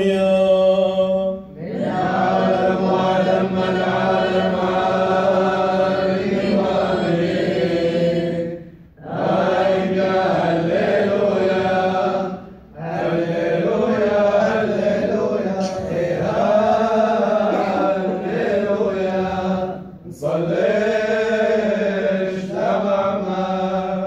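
Men's voices chanting an Assyrian Church of the East liturgical hymn in unison, in long held phrases with brief pauses for breath between them.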